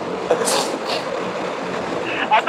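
Motorcycle riding at highway speed, heard from the rider's handlebar camera: a steady rush of wind and road noise with the engine underneath, and a brief burst of hiss about half a second in.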